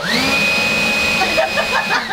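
A loud machine whir that starts suddenly, with a whine that rises quickly and then holds steady, like a motor spinning up to speed. A voice talks over it in the second half, and the whir cuts off abruptly at the end.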